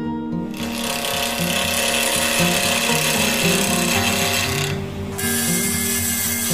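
Abrasive rubbing against wooden pen blanks spinning on a lathe: a loud steady hiss that starts about half a second in, breaks off briefly near five seconds and then resumes. Background music plays underneath.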